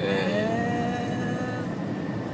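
Steady road and engine noise heard inside the cabin of a moving car, with a held, slightly rising tone over the first second and a half or so.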